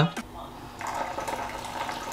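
A kitchen tap running, filling a bowl with a little water.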